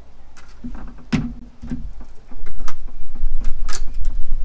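Sharp plastic clicks and knocks of a gel blaster's stick magazine being released and put down on a glass tabletop, the loudest about a second in and near the end. A low rumble sits under them and grows louder from about two seconds in.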